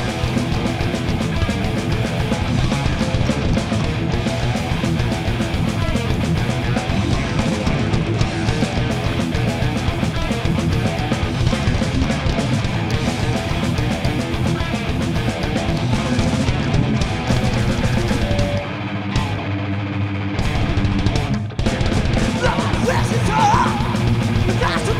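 Heavy metal band playing live: distorted electric guitars and drums. Near the end the sound thins out for a couple of seconds, then the full band comes back in.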